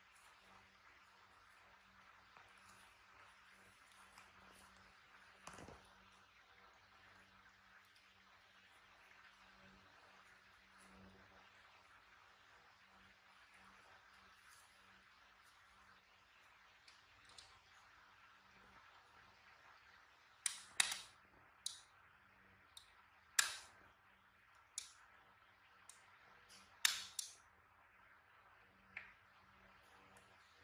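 Faint room tone, then from about two-thirds of the way in some ten sharp crackles and snaps as a disposable diaper's plastic backing and tabs are handled and fastened.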